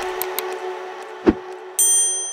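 Sound effects of a YouTube subscribe-button animation over a steady held tone: a couple of light clicks, a sharp mouse-click a little over a second in, then a bright bell ding near the end that rings on.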